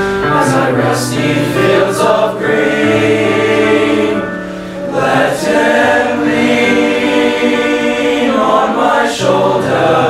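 Male teenage choir singing in several parts, holding sustained chords that shift from note to note, with a few crisp sung s-sounds cutting through.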